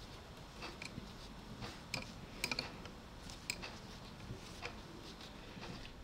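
Faint, irregular clicks of a metal knitting needle and the handling of yarn as stitches are cast on by hand.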